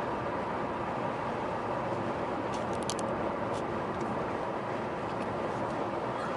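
Steady road and tyre noise inside a moving car's cabin at highway speed, with a few faint ticks near the middle.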